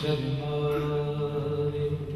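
Male voice singing a naat into a microphone, holding one long steady note, over a steady low drone.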